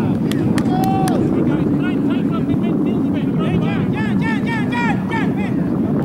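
Outdoor field ambience: wind rumbling on the camera microphone, with faint voices and a steady run of quick, high chirping calls.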